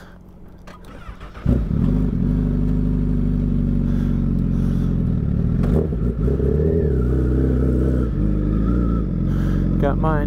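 Sportbike engine starting about a second and a half in, catching at once, then idling steadily with small changes in speed.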